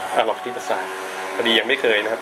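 A recorded voice from a children's learning app on the tablet, played through the tablet's small speaker. It speaks in two short phrases as the maths menu item is tapped.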